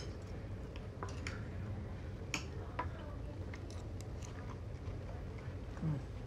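Knives and forks clicking lightly and scattered against plates as chicken cutlets are cut, with chewing as the food is tasted, over a low steady room hum.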